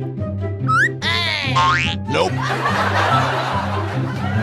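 Comedic background music with a steady bass line, overlaid with cartoon sound effects: a quick rising whistle-like glide just before one second in, then a warbling boing effect lasting about a second. From about two seconds in, laughter joins the music.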